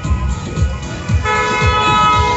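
Music with a steady drum beat, and a car horn sounding one long, steady honk from a little over a second in.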